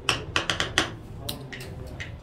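Casino chips clicking together as they are stacked and handled: a quick run of about five sharp clicks in the first second, then a few more spaced apart.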